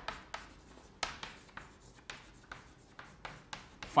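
Chalk writing on a blackboard: an irregular run of short taps and scratches, a few a second, as the letters are written.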